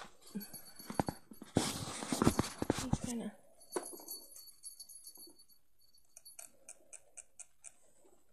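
Rustling and knocks of a handheld camera being moved close to its microphone, loudest in the first half, then a quick run of about eight light taps near the end.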